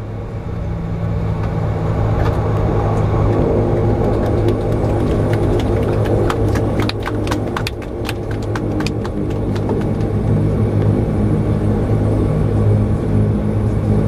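Twin turboprop engines and propellers droning steadily as heard inside the cabin, growing louder over the first couple of seconds as the aircraft taxis after landing. A run of sharp clicks and rattles comes through in the middle.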